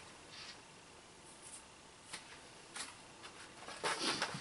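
Quiet handling sounds: a few faint, brief rustles as cut masks are peeled off a gel printing plate and a sheet of paper is picked up.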